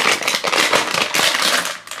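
Plastic packaging on a toy bottle being crinkled and peeled, a dense run of quick crackles.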